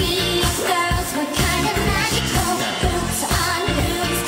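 Japanese pop song with singing over a steady beat.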